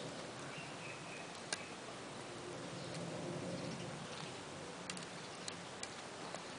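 A few faint, scattered clicks from a stainless-steel braided hose and its AN fitting being handled, over steady background hiss.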